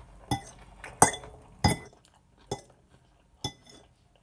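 Metal fork clinking against a plate five times as food is scooped up, the loudest clink about a second in.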